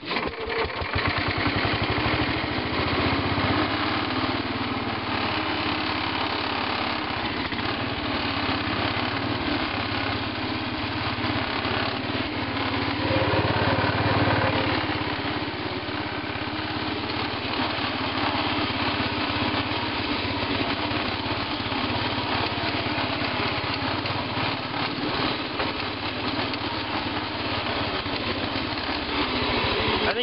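Tecumseh 12 hp engine of a 1970 Sears Suburban 12 garden tractor starting on the key, catching almost at once after a brief crank, then running steadily, a little louder about halfway through.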